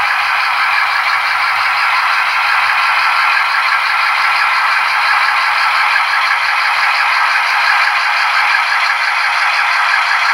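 Model diesel locomotive running along the layout track, making a steady, even running noise that holds at the same level throughout.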